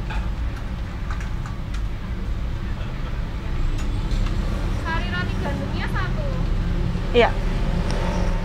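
Car idling, heard from inside the cabin as a steady low rumble, with faint voices over it.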